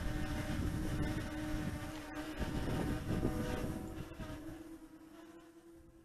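Dragonfly KK13 quadcopter's 1406 brushless motors and propellers humming overhead at a steady pitch, with wind buffeting the microphone. The sound fades out near the end.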